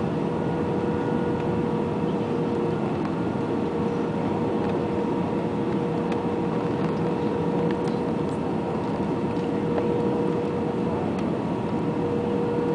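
Airbus A320 cabin noise during the descent toward landing, heard from a seat over the wing: a steady rumble of engine and airflow with a constant whine through it.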